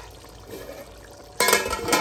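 A metal plate-lid clatters and scrapes on the rim of a metal cooking pot as it is handled, a sudden loud burst of about half a second near the end, after a quieter stretch.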